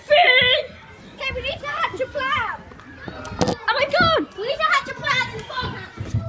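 Children's high voices calling out in play, rising and falling in pitch, with two sharp knocks a little past the middle.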